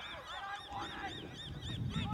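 A bird calling in a rapid, regular series of short, high repeated notes, about five a second, over a low outdoor rumble.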